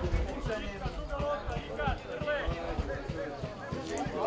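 Indistinct voices of people talking close by, over open-air background noise, with scattered low thumps.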